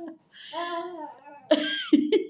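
A four-month-old baby laughing: a drawn-out voiced laugh about half a second in, then a sudden, louder, breathy burst of laughter near the end.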